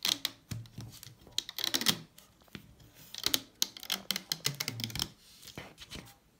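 Rubber loom bands snapping and clicking on the plastic pegs of a Rainbow Loom and a metal hook as the bracelet is pulled off the loom: repeated sharp clicks and rustles in short clusters every second or two.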